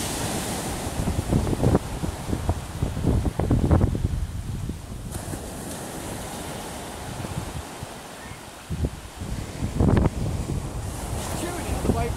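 Sea surf breaking and washing up a sandy beach, with gusts of wind rumbling on the microphone. It eases a little in the middle.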